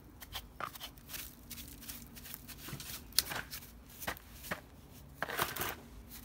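A small hand tool scraping and picking at dry, decayed wood inside a rotted cavity in a cherimoya trunk. The strokes come in short, uneven scrapes and crunches, with a sharp click about three seconds in and a longer scraping run near the end.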